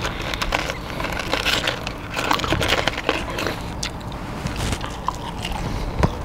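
Close-up chewing and crunching of Popeyes Cajun fries, a run of irregular crisp crunches and clicks, over a steady low rumble.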